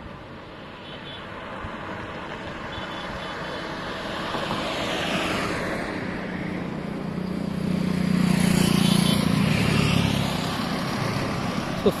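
Road traffic passing close by on a bridge, growing louder as vehicles sweep past one after another. The loudest is a heavy vehicle with a low engine drone, about eight to ten seconds in.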